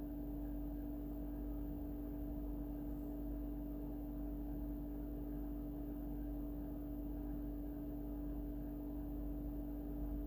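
A steady background hum with a constant tone, unchanging throughout.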